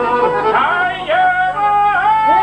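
A man singing long, held folk-song phrases with sliding ornaments, accompanied by plucked long-necked lutes.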